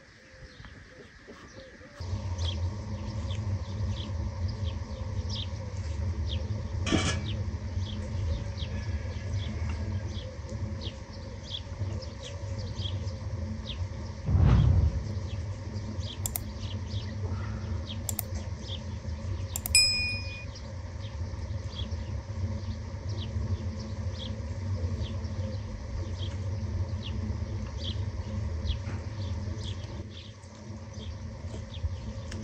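Meat frying in oil in a large pan, a steady sizzle with frequent high chirps from birds, beginning after a quiet first two seconds. A single dull knock comes midway, and a few sharp clicks with a short metallic ding follow a few seconds later.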